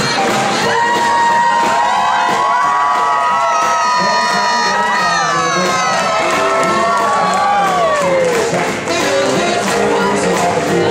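Swing band music with long held notes that slide down and fall away near the end, over a crowd cheering.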